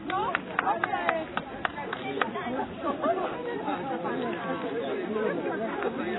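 Indistinct chatter of several people talking at once, with a few sharp clicks in the first two seconds.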